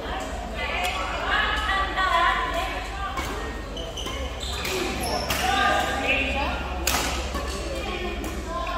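Voices talking and calling in a large, echoing sports hall, with a few sharp knocks, the strongest near the end.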